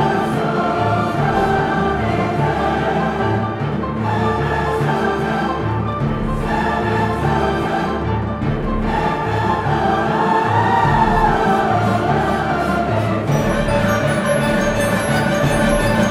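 High school symphony orchestra and massed choir performing together, holding loud sustained chords with brass and strings.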